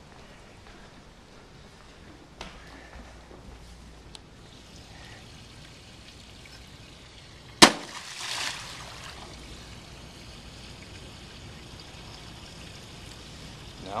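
A Panasonic DVD player thrown into a swimming pool: one sharp smack on the water a little past halfway, followed by about a second of splashing. Two faint knocks come earlier.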